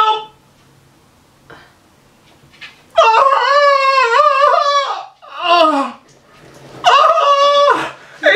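A high-pitched, wavering howl held for about two seconds, a short falling whine, then a second shorter howl near the end, after about three quiet seconds.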